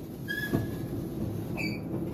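Elevator car running: a steady low rumble with a few short, high squeaks and a single click about half a second in.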